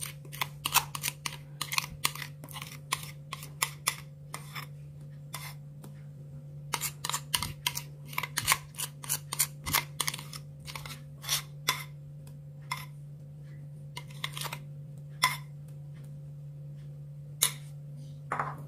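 A spatula scraping and tapping against a bowl as chocolate cake batter is scraped out into another bowl of batter: irregular short clicks and scrapes in clusters, sparser in the last few seconds, over a steady low hum.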